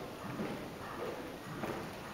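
Hoofbeats of a horse moving over the sand footing of an indoor riding arena, heard as a few soft, muffled thuds.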